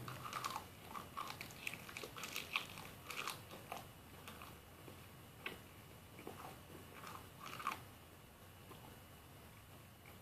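Faint, irregular small clicks and crackles of handling noise, thinning out and stopping near the end.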